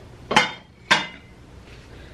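Two plates clinking against each other twice, about half a second apart, each a short knock with a brief high ring, as they are picked up.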